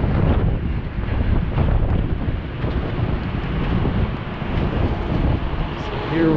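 Steady wind rumble on a moving action camera's microphone, mixed with city street traffic noise.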